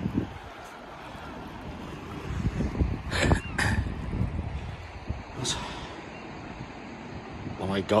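Wind rumbling and buffeting on a phone microphone, with a couple of short knocks about three seconds in.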